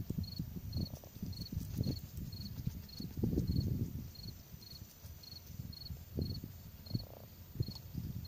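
An insect chirping steadily, about two short high chirps a second, over irregular low rustling and buffeting close to the microphone, loudest a little past the middle.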